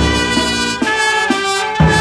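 Small brass band playing a tune: trumpet and saxophone over sousaphone bass, the notes changing about every half second, with heavy low bass notes at the start and again near the end.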